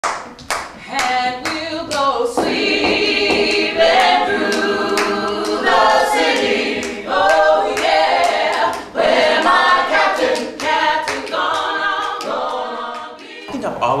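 A small ensemble of actors singing a gospel song a cappella, with hand-clapping on the beat about twice a second.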